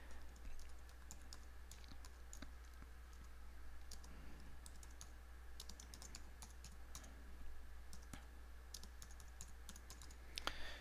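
Faint typing on a computer keyboard: light key clicks coming in short scattered runs, over a steady low hum.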